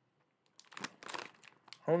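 Irregular crinkling of a plastic Goldfish cracker bag being handled, with some crunching of the crackers, starting about half a second in.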